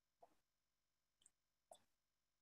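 Near silence, with three faint, brief clicks spread through it.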